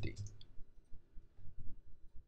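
Soft, dull taps and clicks from a computer keyboard and mouse as a number is typed in and the timeline is clicked, heard as a quick string of muffled knocks.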